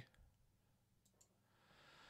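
Near silence with a couple of faint computer mouse clicks, then a soft in-breath near the end.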